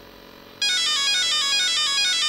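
Castle Mamba Max Pro ESC sounding its confirmation beeps through the brushless motor: a quick run of short tones stepping in pitch, starting about half a second in after faint static hiss. They confirm that full throttle has been registered as the top endpoint during ESC programming.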